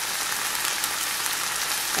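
Mushrooms, onions and garbanzo beans sizzling steadily in olive oil in a frying pan.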